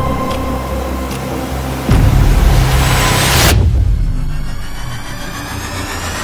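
Suspenseful film score: a deep booming hit about two seconds in over held drone tones, then a noisy swell that builds and cuts off suddenly, followed by rising high tones.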